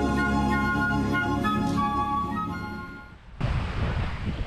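Instrumental background music with held notes and a flute-like melody, fading out about three seconds in. Near the end it gives way suddenly to live outdoor sound: wind on the microphone and surf.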